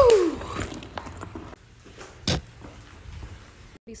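A person moving through a cramped crawl space: a short falling vocal sound and a thump at the start, then faint scraping and one sharp knock a little after two seconds in.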